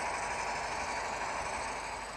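Steady diesel-engine idle sound from an HO-scale model locomotive's onboard sound system, a continuous even hum with no revving.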